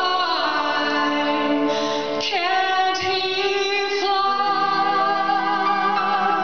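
A woman singing long, held notes with vibrato into a microphone, accompanied by a grand piano whose chords are struck afresh a few times.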